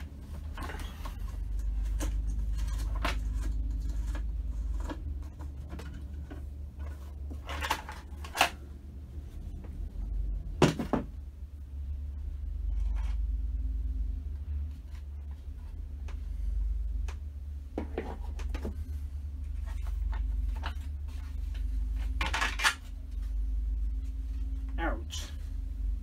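Scattered clicks, knocks and clatters of plastic and metal parts being handled as the top cover is worked off a lawnmower engine. The loudest knock comes about ten seconds in. A steady low hum runs underneath.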